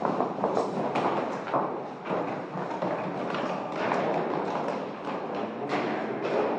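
Hurried footsteps thudding on stairs, several irregular steps a second over a dense rumble.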